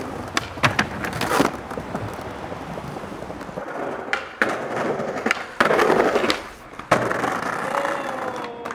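Skateboard wheels rolling on pavement and stone, broken by several sharp clacks of the board popping and landing. There is a louder rough scraping stretch of about half a second near six seconds.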